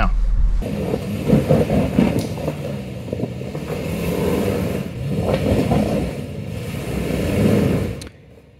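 Toyota Tacoma's engine working at low revs, its pitch rising and falling as the truck crawls over a rocky trail, with tyres crunching and scraping on rock and gravel and a couple of sharper knocks.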